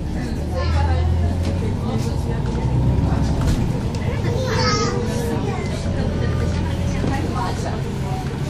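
Low drone of a city bus heard from inside the passenger cabin as it pulls away from a stop and drives off. Passengers' voices talk over it.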